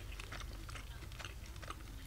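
A person chewing a mouthful of curry rice, faint small irregular mouth clicks.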